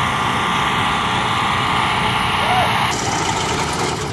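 Small engine-driven water pump on the back of a water tanker truck, running steadily. It is taken to be pumping water from the tank to a hose. Its sound shifts noticeably about three seconds in.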